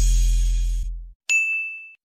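The tail of a short music sting dies away in the first second, then a single bright, high-pitched ding sound effect strikes a little past halfway and rings briefly before cutting off.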